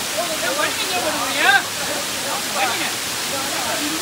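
Waterfall water sheeting down a steep rock face, a steady rushing hiss, with people's voices talking over it.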